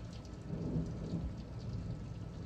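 Soft, irregular dabbing of a damp makeup sponge pressing liquid foundation onto the skin, over a low rumble.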